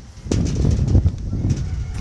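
Wind buffeting the phone's microphone outdoors: an uneven, gusting low rumble, with a couple of bumps near the start.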